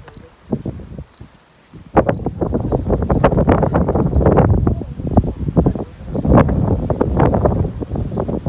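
Gusty wind buffeting the microphone: faint at first, then loud and ragged from about two seconds in, easing briefly around six seconds before gusting up again.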